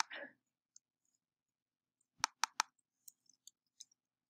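Clicks of a computer keyboard and mouse as font-size values are entered: three sharp clicks in quick succession about two seconds in, then a few lighter clicks.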